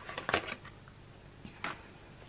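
A few light, sharp clicks and taps of felt-tip artist pens being handled, capped and set down on a desk, the last about one and a half seconds in.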